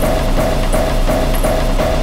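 Dramatic background score: a mid-pitched note pulsing about three times a second over a steady low drone.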